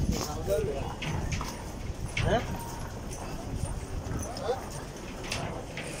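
Footsteps knocking irregularly on a footbridge, with scattered voices of passers-by and a few short calls rising in pitch.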